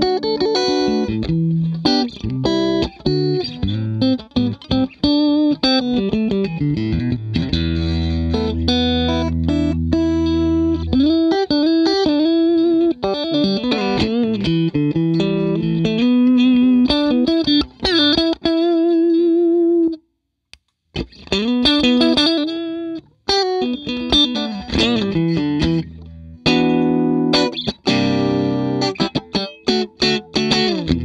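Electric guitar played through a Boss CS-3 compression sustainer pedal: a run of single-note lines and chords with long, evenly sustained notes. It stops briefly about two-thirds of the way through, then the playing resumes.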